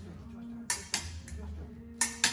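Epee blades clashing: two sharp metallic clinks about a quarter second apart, a little after halfway, then a fainter one.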